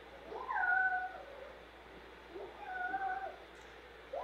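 Cat meowing twice: two long, drawn-out meows, each rising at the start and then sliding down, about two seconds apart.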